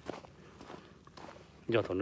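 Footsteps on a gravel shore: faint, irregular crunching steps with a small click at the start, then a man's voice begins near the end.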